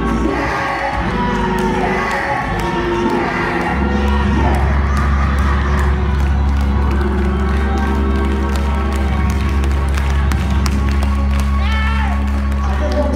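Church music with a sustained low bass note and held chords, with voices shouting and cheering over it.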